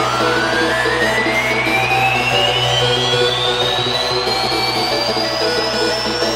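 Electronic synthesizer riser: one long tone sweeping steadily upward in pitch over a held synth chord, building up as a song intro.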